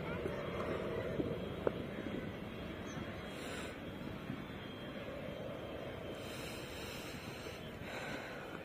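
Open-air ambience on a playing field: a steady background rumble with faint distant voices and a couple of faint clicks in the first two seconds.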